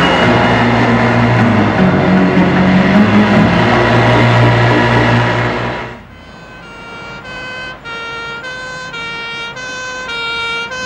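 Outboard engine of an inflatable rescue boat running at speed with the rush of water, cutting off suddenly about six seconds in. Then an ambulance's two-tone siren alternates steadily between two notes, growing louder as it approaches.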